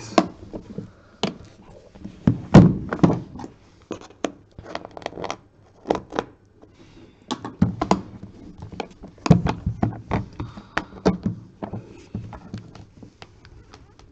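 Black metal-framed card briefcase being handled: a string of knocks, taps and clicks as it is turned over and set down on the table, with the loudest thump about two and a half seconds in and another about nine seconds in.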